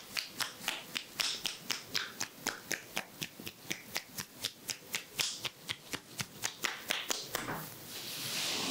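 Rapid, even percussive head-massage strokes made with the palms pressed together, the loose fingers clapping against each other about five times a second. A little before the end the tapping stops and hands rub softly over the forehead.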